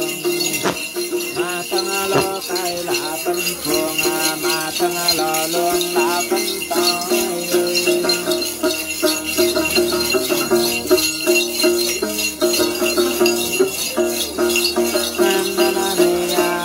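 Bundles of small Then ritual jingle bells shaken steadily in rhythm, with a sung Then melody over them.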